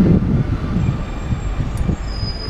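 BMW M3's engine and exhaust as the car drives slowly past, a low rumble that is loudest at the start.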